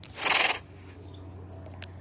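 A tiger hissing once, a short breathy hiss of about half a second just after the start. A few faint clicks follow.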